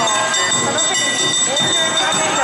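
Awa odori street-dance accompaniment: small kane hand gongs ringing continuously with a bamboo flute melody over drums, with dancers' shouted calls.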